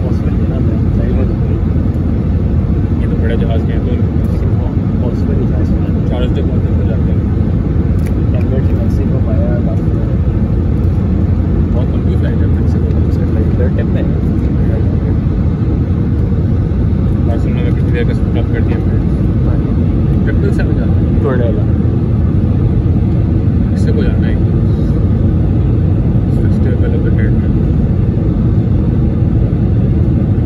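Steady, loud, low rumble of Airbus A320 cabin noise heard beside the wing: the engines and the airflow over the airframe.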